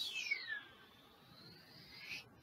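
Squeak of a drawing stroke dragged across an interactive whiteboard: a thin squeal sliding down in pitch over the first half second, then a fainter one sliding up in the second half as the curve is drawn back upward.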